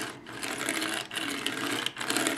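Small plastic Kinder Surprise toy wheelbarrow rolled across a wooden tabletop: its geared plastic wheel works the nut load up and down with a rapid, continuous clicking rattle, broken off briefly about a second in.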